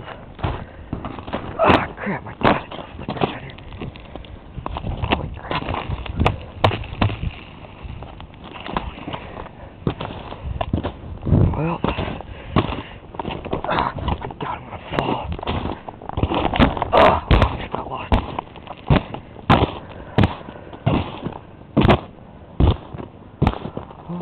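Footsteps crunching through ice-crusted snow: a run of irregular crunches, one every half-second or so.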